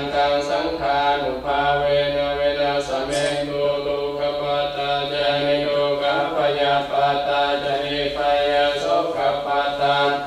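Buddhist monks chanting Pali verses: a steady, near-monotone recitation in short phrases with brief pauses between them.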